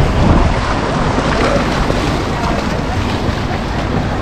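Steady splashing of a young child swimming butterfly in flippers close by, arms and dolphin kick churning the water.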